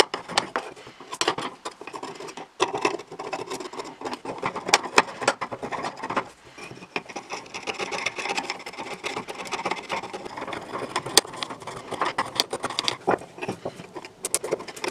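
Flat steel blade scraping and chipping old paint off an old drill's housing: uneven strokes of scraping with many sharp clicks as flakes break away.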